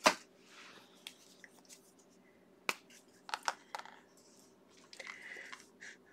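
A sharp click as a black Faber-Castell fineliner pen is picked up and uncapped, a second sharp click about two and a half seconds later, then a few lighter ticks as the pen is handled over paper.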